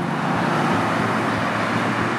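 Steady road traffic noise: an even rush of vehicles with a low hum beneath.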